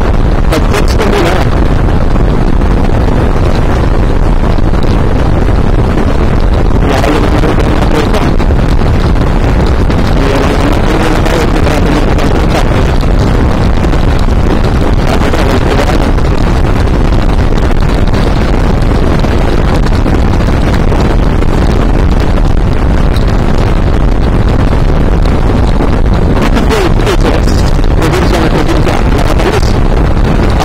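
Loud, steady wind rush on the microphone of a moving motorcycle, with the bike's engine note rising and falling faintly underneath.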